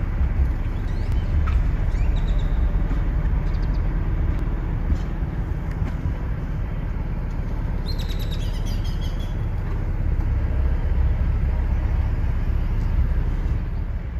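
Steady low rumble of a car driving slowly, with birds chirping outside; a short run of chirps comes about eight seconds in.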